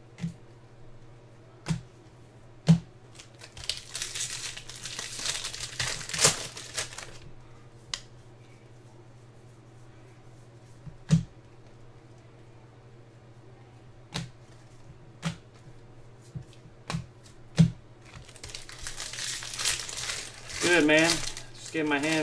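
Trading cards being handled and flipped through, with scattered sharp clicks of card edges, and two stretches of crinkling from a card pack's wrapper, the second as a new pack is torn open near the end.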